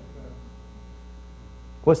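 Steady electrical mains hum during a pause in speech; a man's voice starts again near the end.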